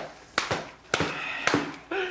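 Four sharp hand slaps about half a second apart, amid laughter at a table.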